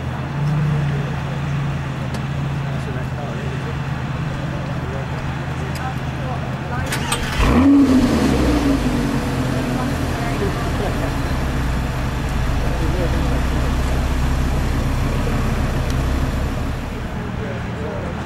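Lamborghini Gallardo's V10 engine idling with a steady low drone. About seven seconds in it gives a sudden loud throttle blip that rises and falls back, then it settles to idle again.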